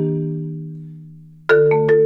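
Korogi concert marimba played with four mallets: a roll stops and a low chord is left ringing, fading away for about a second and a half. Then new mallet strokes start sharply.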